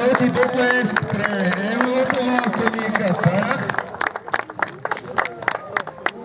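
Scattered audience clapping, sharp irregular claps all through, under a voice holding drawn-out, gliding notes that stops about halfway through.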